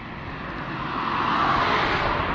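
A road vehicle passing on the bridge, its tyre and engine noise swelling to a peak in the second half.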